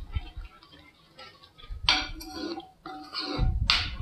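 A spatula stirring milk and ground moong dal in a kadhai, scraping and knocking against the pan twice: once about two seconds in and again near the end.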